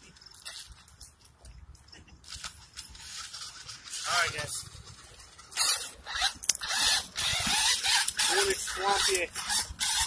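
A 1/10 scale RC rock crawler churning through shallow swamp water and mud, its tyres splashing and spraying. The splashing grows from a few light clicks to a steady hiss that is loudest over the second half.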